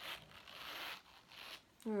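Gold-tone metal zipper on a pebbled-leather Coach zip-around wallet being run along its track: a smooth zipping for about a second, then a shorter, softer pass.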